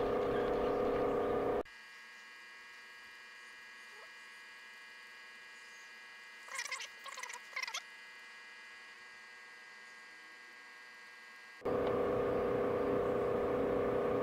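On-demand rain barrel pump running with a steady hum while water from a garden hose pours into a plastic watering can. After about a second and a half this sound cuts out abruptly to a faint steady electrical hum, broken by a brief pitch-bending burst near the middle. The pump and pouring cut back in about two seconds before the end.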